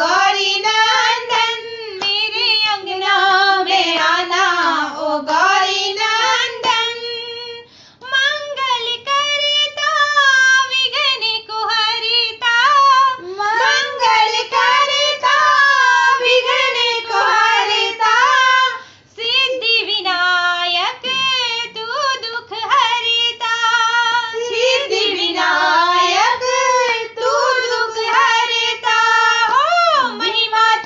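Women singing a Hindi devotional bhajan to Ganesha together, with short breaks between lines about 8 and 19 seconds in.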